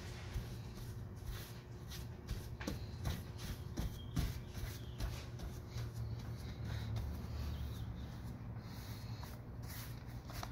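Dusting brush swept back and forth over a glass pane strewn with whiting (calcium carbonate powder), a run of irregular scratchy brush strokes. The powder is lifting the oily residue left by fresh glazing putty.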